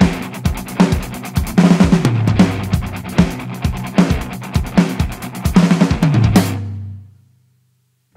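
A rock drum kit played along with the song's recording: bass drum, snare and tom strokes in a fast, syncopated pattern over a sustained bass line, built on groups of seven sixteenth notes. About seven seconds in, the drums and music die away into a second of silence.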